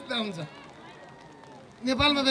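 A man speaking into a microphone. His voice trails off at the start, then comes a pause of about a second and a half with only faint background sound, and he starts speaking again just before the end.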